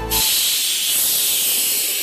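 Pressure cooker venting steam: a loud, steady hiss that starts a moment in and eases toward the end.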